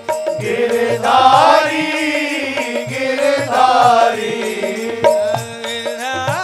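A man singing a Hindi devotional bhajan, drawing out long ornamented notes that glide up and down, over instrumental accompaniment with a regular drum beat.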